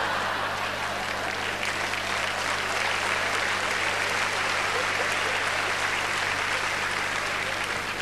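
Large theatre audience applauding steadily, a dense even clapping that eases slightly near the end.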